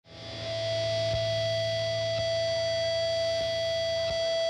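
Electric guitar through a Fender amp holding one steady, unchanging high note that swells in over the first half second, with a few faint soft thumps underneath.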